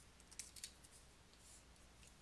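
Near silence with a few faint short clicks about half a second in, from the computer input device as part of the drawing is selected and deleted.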